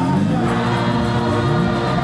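Gospel choir singing, many voices together holding long notes.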